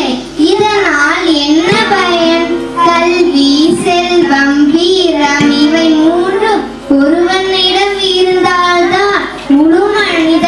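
A girl singing a melodic solo into a microphone, in long phrases broken by brief breaths about every three seconds.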